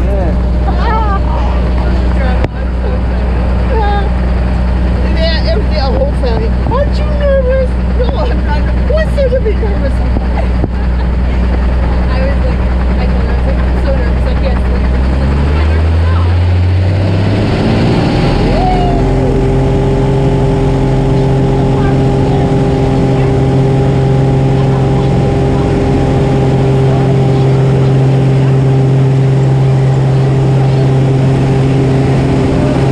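Engine and propeller of a single-engine high-wing jump plane, heard from inside the cabin. It runs steadily at low power, then rises in pitch over about two seconds midway as power comes up for the takeoff roll, and holds a higher steady pitch after that. Voices in the cabin carry over the engine in the first half.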